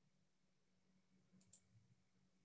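Near silence: faint room tone over a Zoom call, with two faint clicks close together about one and a half seconds in.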